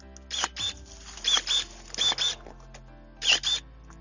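GeoTech MS-30 battery pruning shears making four quick cuts through olive twigs, each a short double whir of the electric motor as the blade snaps shut and springs open again. Faint background music runs underneath.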